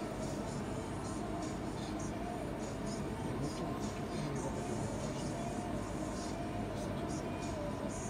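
Steady background hum and hiss with a faint, wavering tone above it, a continuous noise floor with no distinct events.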